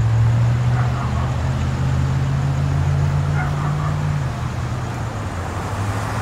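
Car engine idling with a steady low hum.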